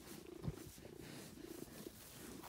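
Tabby cat purring close to the microphone while being stroked, with a brief low thump about half a second in.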